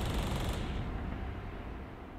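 A short, rapid rattle of machine-gun fire in the first half-second over a low rumble that fades away.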